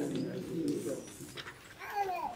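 A voice speaking a read line that trails off in the first half-second, then a short voiced sound near the end.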